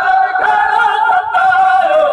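Men's voices singing a noha, a mourning lament, unaccompanied: loud, long held notes, with the pitch stepping down near the end.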